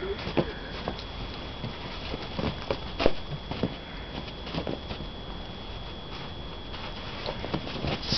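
Scattered soft crunches and scrapes of packed snow being handled: snow swept off a car window by gloved hands and trodden underfoot, with one sharper knock about three seconds in.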